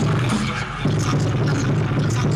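Loud battle music with a heavy bass line, played over a PA system in a hall. It dips briefly just before a second in, then comes back at full level.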